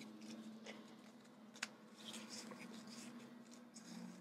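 Faint rustling and light taps of small die-cut paper floral pieces being handled and set down on a table, with one sharper click about one and a half seconds in, over a low steady hum.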